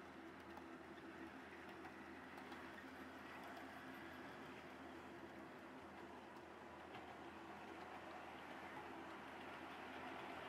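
Faint steady rolling hum of OO gauge model container wagons running on the track, fading after a few seconds as the train moves away.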